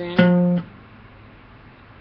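Acoustic guitar: a single plucked note, an F, sounded about a quarter second in. It is one of a run of F octaves being located across the fretboard, and it is cut short after about half a second.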